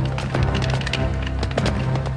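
Film action sound effects: several sharp crashing, splintering impacts, a cluster of them about a second and a half in, over a sustained low orchestral score.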